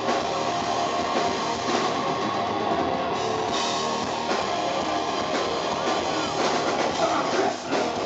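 Live rock band playing loudly: electric guitar and drum kit in a heavy rock song, dense and steady throughout.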